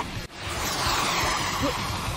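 A sudden drop-out, then a steady rushing whoosh with a slowly sweeping hiss: an anime soundtrack sound effect.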